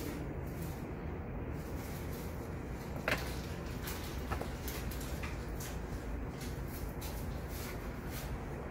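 Electric potter's wheel running with a steady low hum while wet clay turns on it. A few sharp clicks come about three and four and a half seconds in.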